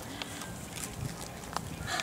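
Quiet outdoor background noise: a steady low hiss, with a short faint hum about a quarter second in and a few faint ticks.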